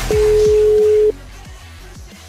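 Italian telephone ringback tone: one steady single-pitch beep about a second long, the sign that the outgoing call is ringing at the other end and has not yet been answered. A music bed with a steady low beat plays under it.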